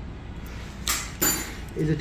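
A short noisy burst, then a single bright metallic clink with a brief high ring: steel surgical instruments knocking together.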